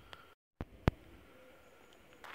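Faint outdoor background broken by a brief dropout to dead silence where two recordings are joined, followed by a single sharp click.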